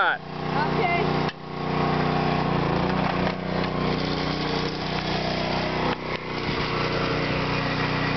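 Stihl 024 Wood Boss chainsaw's two-stroke engine running steadily at an even pitch, with a brief drop in sound about a second in.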